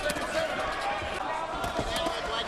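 Punches landing in a professional boxing exchange: a few sharp thuds, one at the start and two close together near the end, over a bed of arena voices.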